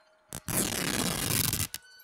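A shirt's cloth ripped open: one continuous tearing sound lasting just over a second, starting just after a short click.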